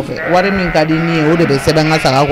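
A person's voice speaking with a wavering pitch, with only brief pauses.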